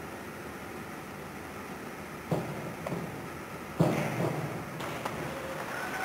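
A diving springboard knocks as a diver hurdles and takes off, followed about a second and a half later by the splash of his entry into the pool, over steady crowd and pool-hall ambience. The entry is under-rotated: the final somersault is not completed and the diver goes in almost head first.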